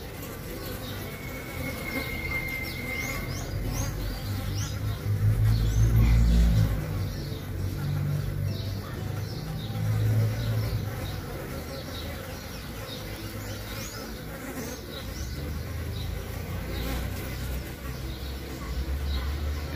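Mandaçaia stingless bees buzzing in flight close by, the hum swelling loudest twice, about five to six and a half seconds in and again around nine to ten seconds. The buzz comes from drones drawn to a newly mated queen that is still giving off her scent.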